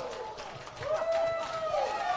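A single long, high-pitched yell from a person, rising in, held for about a second, then falling away.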